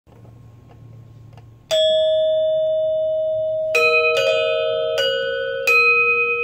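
Balinese gender wayang, a bronze-keyed metallophone over bamboo resonators, struck with mallets: one ringing note about two seconds in, then from about four seconds a few more strikes of two or more notes together, each left to ring on.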